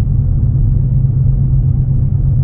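Steady low rumble of a car driving at road speed, engine and tyre noise heard from inside the cabin.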